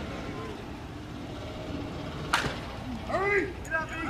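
A single sharp crack of a slowpitch softball bat hitting the ball about two seconds in, over a steady outdoor background hiss.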